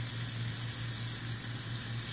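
Steady hiss of a lit jeweller's gas torch flame playing on a steel bar.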